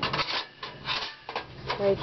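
Wire bottom grill of a Volcano II collapsible camp stove scraping against the stove's metal body as it is lowered in and set in place, in several short scrapes.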